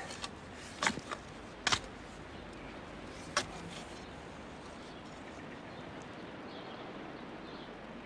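A handful of short, sharp knocks and clicks in the first few seconds as a spade and soil are worked while a young tree is planted, then a steady faint outdoor hiss.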